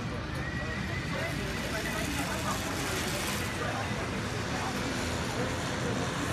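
City street ambience heard from a rooftop: a steady hum of traffic with scattered distant voices and calls.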